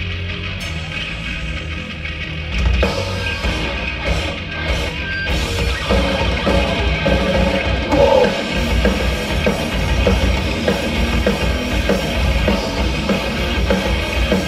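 Live thrash metal band playing: distorted electric guitars and a drum kit. The sound grows fuller and louder about three seconds in.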